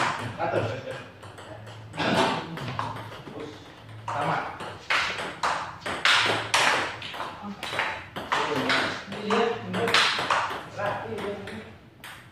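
Table tennis rally: the ball clicking back and forth off the paddles and bouncing on the table in quick, irregular sharp hits, with voices talking over it.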